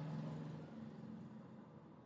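A faint, steady low hum that fades away over the first second or so, leaving quiet room tone.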